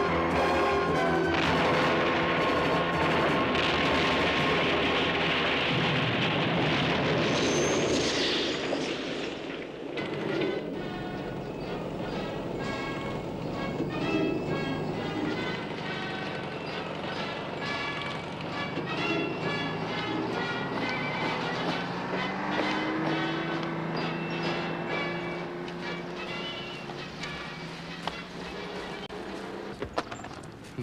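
Film score music. For the first eight seconds or so it is louder and mixed with dense battle noise, with explosions and gunfire, then the music carries on alone at a lower level.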